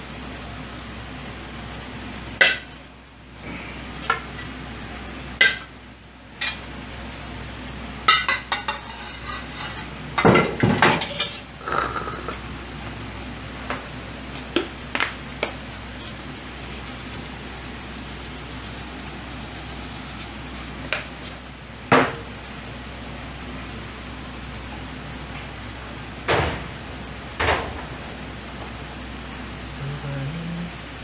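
Kitchen cookware and ceramic bowls being handled: scattered clinks and knocks of metal and crockery, with a busy cluster of clatter in the middle and single knocks later on, over a steady low hum.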